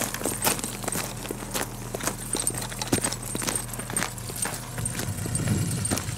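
Flapping-wing robot ornithopter (Microraptor model) with its small brushless motor and gear drive running and its wings beating, giving an uneven clatter of clicks a few times a second over a steady low hum.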